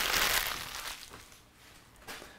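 Clear plastic parts bags crinkling, the rustle fading away over the first second.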